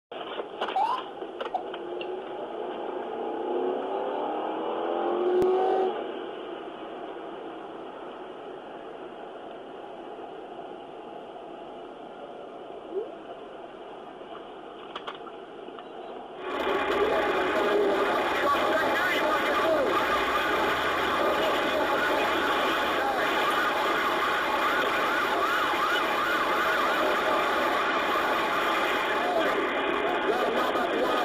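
Inside a moving police cruiser: engine and road noise with indistinct voices over the car's radio. About 16 seconds in, the sound turns abruptly louder and fuller.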